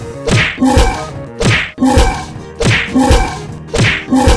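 Looped cartoon fight sound effects: sharp whacks with low thuds, about two a second, each carrying a pitched animal cry.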